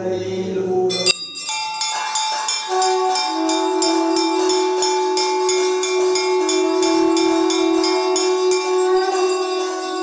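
Temple bells rung continuously during a lamp offering: even strokes, about three a second, over their steady ringing. They start about a second in, as the chanting breaks off.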